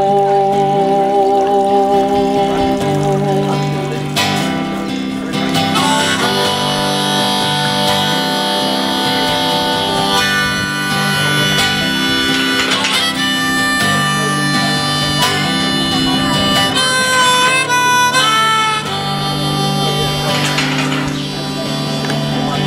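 Harmonica in a neck rack playing an instrumental break over strummed acoustic guitar chords. It plays long held notes, with a run of quick bent notes about three-quarters of the way in.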